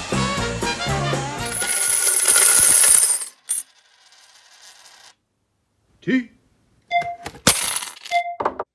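Upbeat swing-style intro music ends about a second and a half in. A bright metallic clatter of coins follows and fades over a couple of seconds. After a pause come a few sharp single coin clinks, each ringing briefly.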